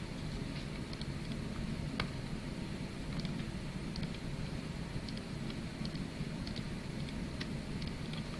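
Steady low room hum with a scattering of faint, short clicks, the sharpest about two seconds in: computer-mouse clicks as components are placed and wired on a circuit schematic.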